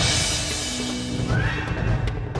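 Background music from the serial's score, opening with a loud hissing swoosh that fades over about a second.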